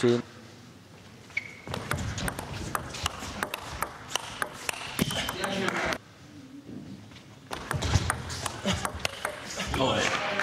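Table tennis rally: the ball clicks sharply and irregularly off the rackets and the table. It comes in two spells, with a short quieter gap about six seconds in.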